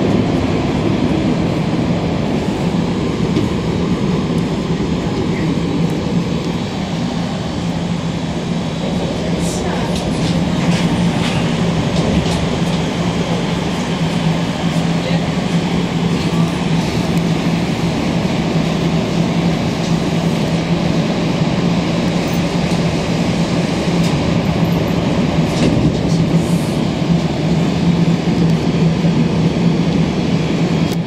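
Inside a Montreal Metro MR-63 rubber-tyred subway car: the train's steady low hum and running noise, with a few sharp clicks about ten seconds in and again near the end.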